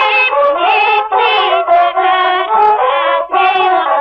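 A song: a voice singing phrases that glide in pitch, over instrumental accompaniment.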